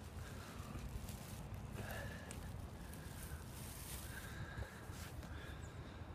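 Faint low rumble and a few light knocks from a hand-held phone being moved about.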